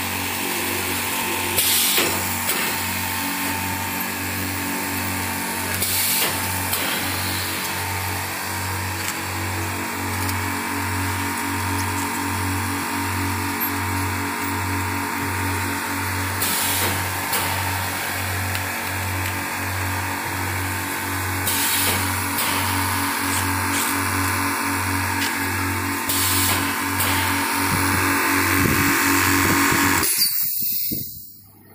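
Automatic L-sealer and shrink-tunnel packing line running: a steady machine hum with a low pulse about once a second, and a short burst of noise about every five seconds as each egg tray is sealed and wrapped.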